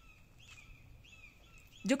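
Faint bird chirps: several short high calls repeating every fraction of a second over a quiet background hiss.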